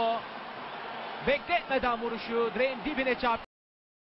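Male television football commentary heard over a steady stadium crowd background, cutting off abruptly to dead silence about three and a half seconds in.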